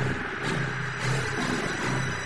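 Steady hiss and low hum of a fighter-jet cockpit intercom recording, the low hum swelling and fading irregularly.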